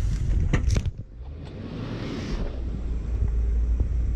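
Lexus LX470 crawling slowly over a sandy, rutted trail, a steady low rumble from the truck heard through a camera mounted on its body, with wind noise on the microphone. A few sharp knocks come in the first second.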